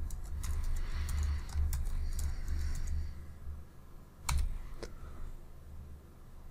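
Typing on a computer keyboard: a quick run of keystrokes over the first two seconds or so, then a louder single click about four seconds in.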